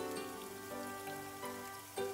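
Water splashing and trickling down the rocks of a homemade garden-pond waterfall, with background music playing over it.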